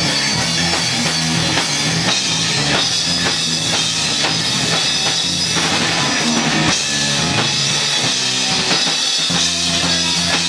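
Live rock band playing loudly: electric guitar over a driving drum kit beat.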